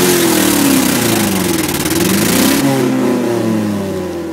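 Ford Escort engine running loud with its exhaust cutout open: the revs fall away, dip and climb once about two seconds in, then settle to a lower steady note. A loud rushing noise over the engine cuts off suddenly about two and a half seconds in.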